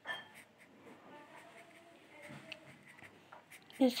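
A felt-tip marker drawing strokes on paper, faint and scratchy.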